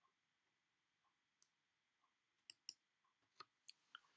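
Near silence: a wall clock ticking faintly about once a second, with five faint, sharp clicks in the last second and a half.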